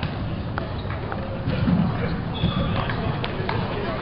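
Scattered, irregular clicks of table tennis balls striking tables and paddles on several tables at once, over a background of people chatting.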